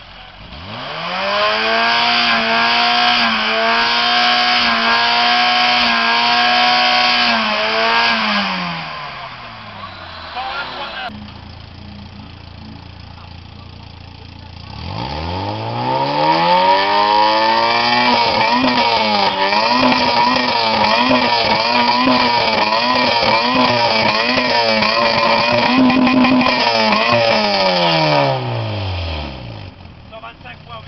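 Car exhausts revved hard for a loudness measurement: a Volkswagen Golf Mk1 cabriolet's engine rises to high revs about a second in, holds them steady for some seven seconds and sinks back to idle. After a few seconds of idle, a Citroën Saxo's engine rises again, holds high revs with a slight warble for about twelve seconds, and falls back near the end.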